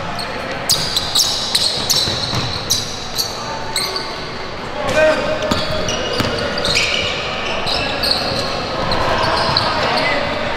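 A basketball being dribbled on a hardwood gym floor, with repeated short bounces and brief high-pitched sneaker squeaks as players cut and drive.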